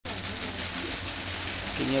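Model train locomotives running on the layout track, with a steady electric whir and hum throughout. A voice cuts in near the end.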